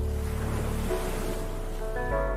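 Song intro with sustained chords under the sound of ocean surf washing in; the low bass drops out about a second in while the surf carries on.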